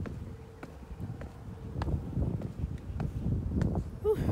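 Wind buffeting the phone's microphone: a low, uneven rumble that grows louder about halfway through, with a few light clicks.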